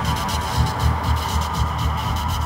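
Ambient drone music built from sculpted static and noise: a low hum throbbing about four times a second beneath a steady, flickering hiss of static.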